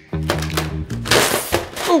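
Background music for about the first second, then a loud, noisy rip lasting about half a second as self-adhesive plastic carpet-protection film is pulled off its roll, the film sticking to itself.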